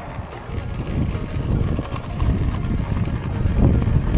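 Wind blowing on the camera microphone while running into a headwind: a loud, uneven low rumble.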